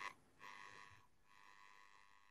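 Near silence: room tone, with only a very faint steady sound running through it.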